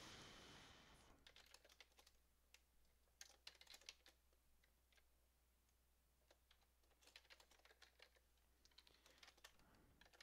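Faint keystrokes on a computer keyboard, typed in two short runs with a pause between them.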